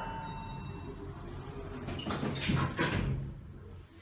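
Richmond traction elevator's sliding doors closing, a rumbling slide with a knock about two seconds in, after a steady tone dies away early on.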